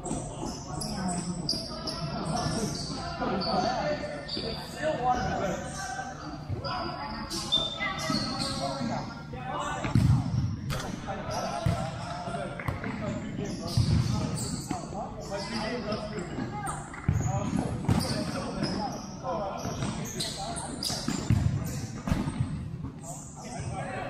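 Futsal game sounds in a large hall: the ball thudding off players' feet and the court several times, with short high squeaks of shoes on the court and players calling out.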